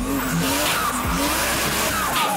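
Turbocharged straight-six of a Toyota Chaser drift car revving hard while its rear tyres squeal and skid through a drift.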